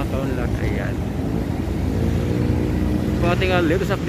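Steady low rumble of motor traffic, with a vehicle engine audible through the middle. Bits of a man's voice come in near the start and near the end.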